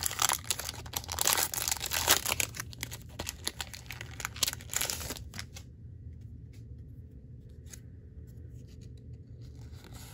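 Foil wrapper of a Pokémon Fusion Strike booster pack being torn open by hand, crackling and crinkling for about five seconds, then only a few faint ticks.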